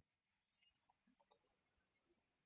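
Near silence with a few faint computer mouse clicks clustered around the middle.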